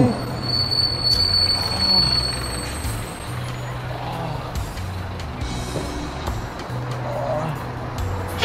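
Street traffic with a city bus running close by: a steady low engine hum, and a thin high whine for the first few seconds.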